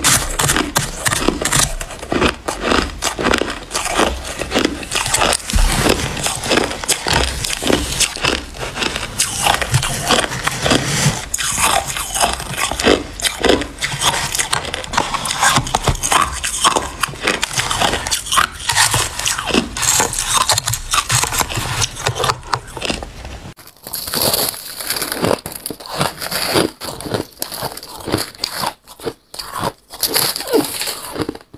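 Close-miked crunching of shaved ice being bitten and chewed, a rapid run of crisp icy crunches. About three-quarters through, the crunches turn thinner and sparser.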